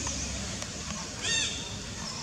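A long-tailed macaque gives one short, high squealing call about a second and a quarter in, its pitch rising and then falling, over steady low background noise.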